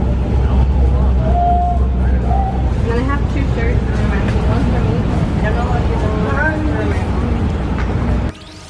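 City street noise: a steady low rumble of road traffic, with indistinct voices of people nearby.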